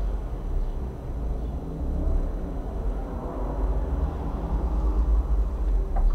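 Uneven low background rumble, with no speech.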